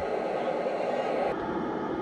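Steady hiss of an FM receiver tuned to the ISS downlink on 145.800 MHz while the signal is weak, with no clear slow-scan TV tones standing out of the noise.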